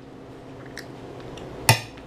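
Cutlery clinking against a plate during eating: a faint tick, then one sharp ringing clink near the end, over a low steady hum.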